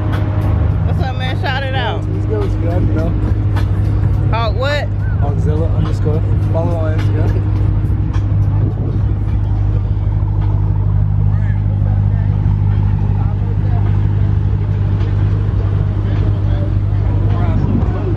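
A car engine idling steadily, a low even hum that holds the whole time, with a few voices talking in the background.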